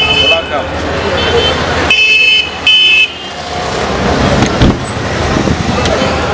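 A high-pitched vehicle horn tooting in short beeps: one at the start, then two louder toots back to back about two seconds in, over background voices and street noise.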